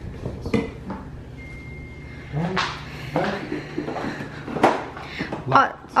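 Plastic knocks and clicks of a Nuna Pipa Lite LX infant car seat being lifted off its base and fitted onto a stroller frame, the sharpest knock about four and a half seconds in. A voice is heard faintly in the middle.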